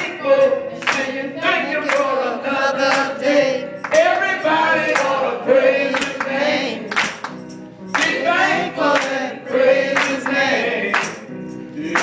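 Gospel singing: a man sings into a microphone, with other voices joining in. A steady beat of sharp percussive strikes, roughly one a second, runs under the singing.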